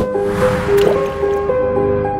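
Logo intro music sting: sustained bright chiming tones with a noisy whoosh that swells in the first second and then fades, a sound effect with a watery, splashing quality.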